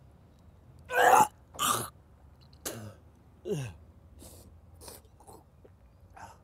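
A man retching and coughing over a bowl: two loud heaves about a second in, a third shorter one, then a heave with a falling groan, followed by several fainter coughs.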